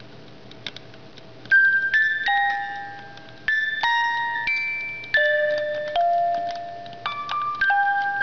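Music box playing a slow melody of struck, bell-like high notes that ring and fade, starting about a second and a half in, over a faint steady hiss.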